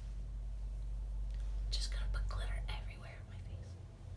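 A person whispering a few words for about a second and a half, over a low steady hum.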